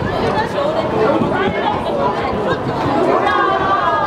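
Chatter of many people talking at once, with a higher-pitched voice standing out near the end.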